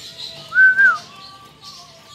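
A single clear whistle about half a second long, rising slightly, holding and then dropping off, with a fainter lower tone trailing on for a moment after it.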